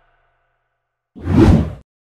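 A whoosh transition sound effect about a second in, swelling and cutting off after roughly half a second.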